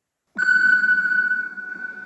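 An edited-in sound effect: a single steady high ping over a low rumble, starting suddenly and fading over about two seconds, marking a year title card.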